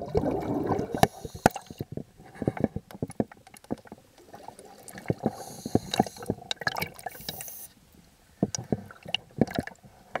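Water heard through a submerged camera: a muffled wash of moving water in the first second, then many scattered sharp clicks and pops, quieter for a moment near the end.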